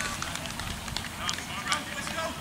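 Scattered distant shouts and calls from players on an outdoor football pitch, just after a goal, over a low steady background rumble.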